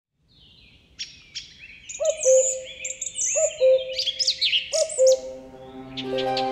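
Several birds singing and chirping in quick high whistles and trills, with a lower two-note call, the first note higher than the second, repeated three times about every second and a half.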